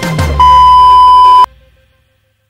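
Background music ends on a held low note, then a loud, steady electronic beep sounds for about a second and cuts off suddenly.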